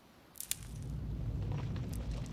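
Cartoon sound effect of the big boulder beginning to rumble: a sharp crack about half a second in, then a steady deep rumble.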